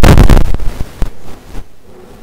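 Loud, distorted rushing noise overloading a handheld microphone. It dies away about half a second in to a faint hiss.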